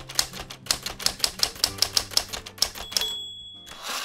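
Typewriter sound effect: a rapid run of key clacks, about seven a second, for nearly three seconds, then a single bell ding and a short swish near the end.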